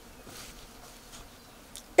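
Faint insect buzzing, such as a fly, over quiet outdoor background sound.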